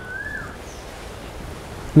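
Steady outdoor background hiss, with one short whistled bird chirp that rises and falls near the start. A man's voice begins at the very end.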